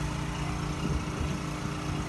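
A motor or small engine running steadily with a low, even hum.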